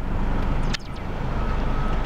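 Steady low rumble of a car idling, heard from inside the cabin, with a brief click about three-quarters of a second in.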